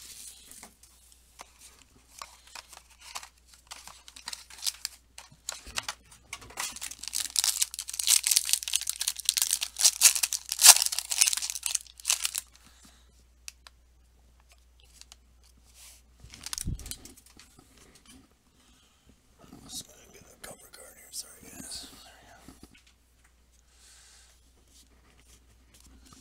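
Plastic and foil wrappers being torn open and crinkled as a sealed box of trading cards and its foil pack are opened, loudest in a long tearing stretch from about 7 to 12 seconds in. Quieter rustling and clicks of the cards being handled follow.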